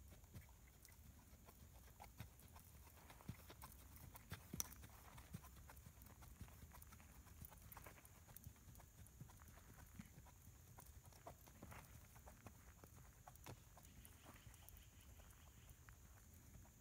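Faint hoofbeats of an Icelandic horse walking on sandy arena footing: soft, uneven clip-clop with a few sharper clicks about three to five seconds in.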